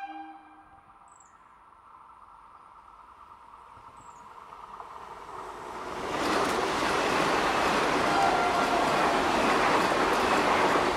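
Vande Bharat Express electric trainset approaching at speed and passing close by: a rushing of wheels on rails builds steadily and turns loud about six seconds in as the coaches sweep past. A horn blast cuts off at the very start, and a bird chirps faintly twice before the train arrives.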